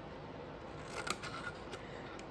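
Small craft scissors snipping scored cardstock tabs: a few faint, short snips about a second in and again a little later.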